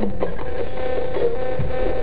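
Spirit box radio sweeping through stations: a continuous hum with choppy, music-like fragments of broadcast sound.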